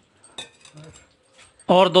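A single light click about half a second in, with a few faint handling noises after it, then a man starts speaking near the end.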